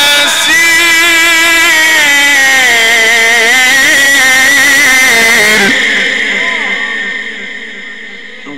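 A Quran reciter's voice, amplified through a microphone, holding one long ornamented note in Egyptian tajweed style with the pitch wavering and sliding. The note breaks off about six seconds in, and its echo fades away.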